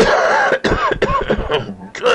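A person's loud coughing and throat-clearing sounds: a sharp first burst, then several short vocal sounds that rise and fall in pitch.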